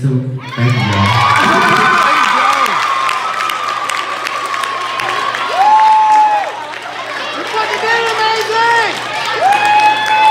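Audience of mostly young women cheering and screaming as a rap song ends, with many high overlapping shouts and two long, high, held calls, one in the middle and one near the end.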